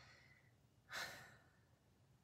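A single short sigh from a person, about a second in, fading out over about half a second.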